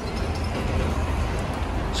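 Steady outdoor street background noise: a low rumble with a hiss over it and no distinct events.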